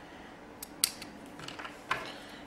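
A few small, sharp clicks and taps, the loudest about a second in, from a crimped metal terminal and a round plastic Delphi transmission wiring connector being handled.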